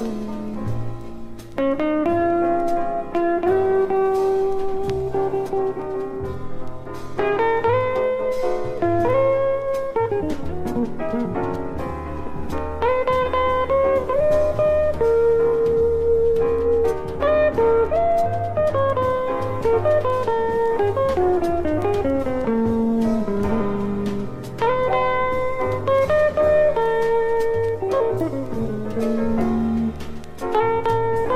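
Jazz recording from 1970: a guitar plays a flowing melody line, with a few slides between notes, over a bass line.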